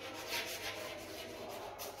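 Chalk scratching on a blackboard as handwriting is written, heard as a run of short scratchy strokes.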